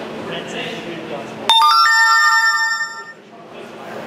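A loud two-note electronic chime starts suddenly about one and a half seconds in, rings steadily for about a second and a half, then cuts off, over the chatter of the crowd.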